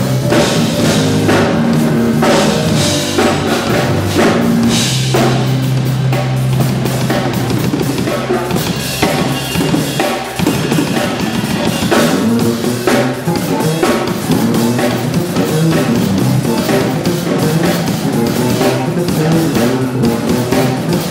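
Live gospel band jam: a drum kit played in a busy groove of bass drum, snare and cymbals, with electric bass guitar and organ underneath. There is a held low note from about four to seven seconds in.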